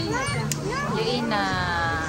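Young children's voices calling out over restaurant chatter and background music, ending in one long high-pitched call.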